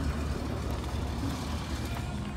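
Steady low rumble of a vehicle engine running, with a faint even hiss above it.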